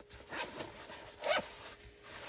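A zipper on a Cordura nylon belt pouch being pulled in two short strokes about a second apart, with the fabric handled between them.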